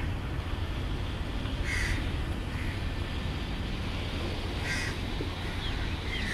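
A bird calling twice, about three seconds apart, with a few faint higher chirps near the end, over a steady rumble of wind and sea.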